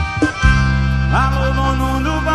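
Live forró band playing an instrumental passage: a held bass note under sustained chords, with a rising pitch glide about a second in.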